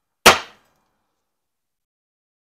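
A single sharp hammer blow on a center punch held against a truck's sheet-metal fender, with a brief ring that dies away within about a third of a second. The strike dents a small dimple in the metal to guide a drill bit.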